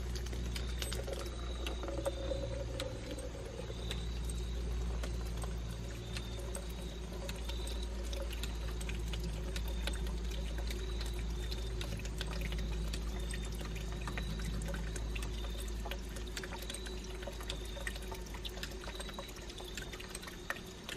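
Water pouring from the end of a garden hose into a plastic cup, delivered by a hydraulic ram pump, with a low steady rumble underneath.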